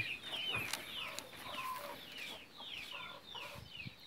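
Chicks peeping in the background: a steady run of short, high peeps, each falling in pitch, several a second.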